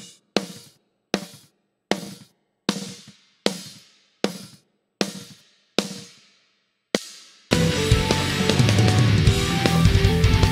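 Recorded live snare drum hits, soloed, about ten single strokes roughly three-quarters of a second apart, each ringing out before the next; the snare bottom mic is blended in with the top mic partway through, adding high-end sizzle. About 7.5 seconds in, the full metal track cuts in: whole drum kit with distorted electric guitar.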